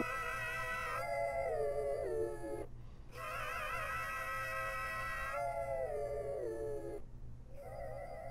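A sung vocal loop playing back from a DAW: long held notes with a wavering vibrato, each phrase sliding down in pitch and breaking off, with two short gaps. A volume fade-out drawn on the clip's end is starting to take effect near the end.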